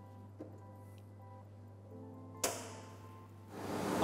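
Soft background music with held tones. About two and a half seconds in, a single sharp metal clack, the latch on the powder feeder cabinet's door being shut, with a faint click shortly after the start.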